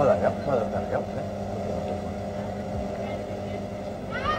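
A steady low hum throughout, with faint voices in the first second.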